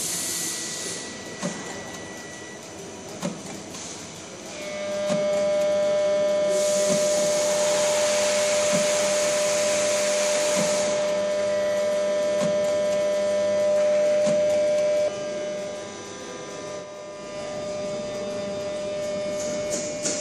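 A SAVEMA friction feeder and conveyor running, with a regular click about every second and a half to two seconds as items pass through. A louder machine whine with a hiss comes in about five seconds in and cuts off suddenly about ten seconds later.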